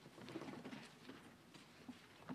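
Faint rustling and scattered small knocks from a congregation settling and handling hymnals in a quiet church, with no music or speech.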